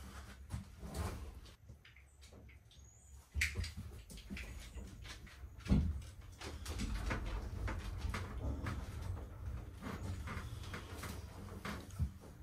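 Knocks, bumps and door sounds of someone stepping out of a small enclosed cargo-trailer camper and moving about, with a louder thump about six seconds in followed by steadier low background noise dotted with small knocks.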